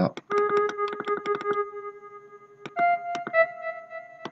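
Synthesized instrument notes from the FL Studio Purity plugin playing part of a beat melody: one long held note, then a higher note that starts about three seconds in. Over the first second and a half there is a fast run of short ticks.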